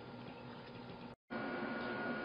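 Quiet room tone with faint hiss between two stretches of speech. The sound cuts out completely for a split second a little after one second in, then returns slightly louder with a faint steady high whine.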